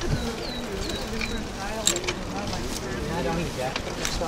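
A bird's short, falling chirps, about four in the first second and a half, then people's voices talking, over a steady low rumble of wind on the microphone.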